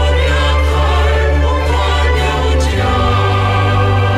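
Gospel song: voices singing in Twi over a steady instrumental backing, the bass moving to a new note a little under three seconds in.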